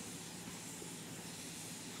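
Faint, steady hiss with no crackles or pops.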